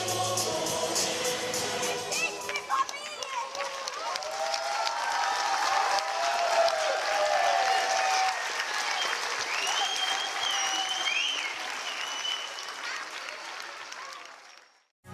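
Music ending within the first few seconds, followed by a crowd applauding and cheering with scattered shouts, which fades out near the end.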